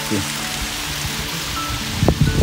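Steady rush of falling water from a small waterfall in a rocky wadi, with background music of held notes playing over it.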